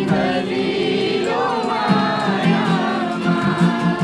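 Steel-string acoustic guitar strummed in a steady rhythm, with several voices singing along to it.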